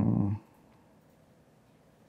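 A man's brief low hum, steady in pitch, cut off about half a second in, followed by quiet room tone.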